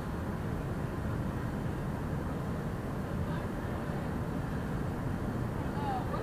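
Steady low rumble of city street traffic, with a short falling squeal near the end.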